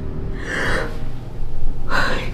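A woman's startled gasps, two sharp breathy bursts about a second and a half apart, over low background music.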